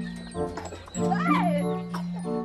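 Background music with long held notes, and one short whimper from a dog about a second in, rising and then falling in pitch.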